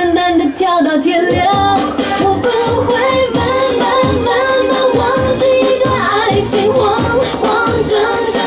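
Mandarin pop song with a singer over a steady dance beat.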